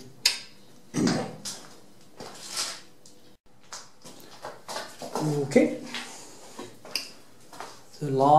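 Scattered clinks and clatter of small hard objects being handled, with short stretches of a man's indistinct voice in between. The sound drops out for a moment about three and a half seconds in.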